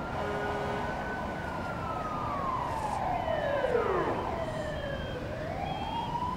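Several emergency-vehicle sirens wailing at once, each slowly rising and falling in pitch, over a steady hum of city noise.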